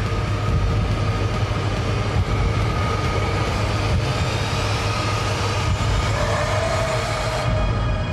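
Dense, steady rumbling battle sound effects from a film sound mix, with score tones held underneath. A new held tone comes in about six seconds in, and the high end drops away shortly before the end.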